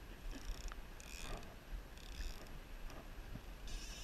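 Fly reel's click-and-pawl drag ratcheting in several short spells while a hooked steelhead pulls against a bent spey rod.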